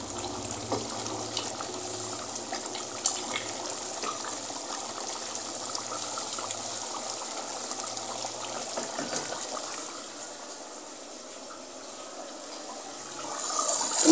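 Mutton masala sizzling as it is sautéed in an open aluminium pressure cooker, a steady hiss with small scrapes and taps of a wooden spoon stirring against the pot. It eases off a little for a few seconds near the end.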